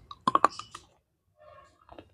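A bite snapping through a white KitKat chocolate-covered wafer bar close to the microphone: a quick run of sharp crunchy cracks about a quarter second in, then fainter chewing crunches near the end.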